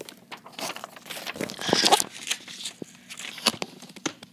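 A sheet of paper rustling and crinkling as it is handled and laid down, mixed with handling knocks and clicks on the phone; the loudest rustle comes a little before halfway.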